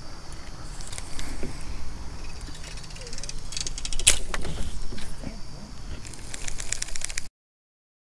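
Knocks and handling noise from a kayak and fishing gear over a low rumble of wind on an action-camera microphone, with one sharp knock about halfway through and a quick run of clicks near the end before the sound cuts out.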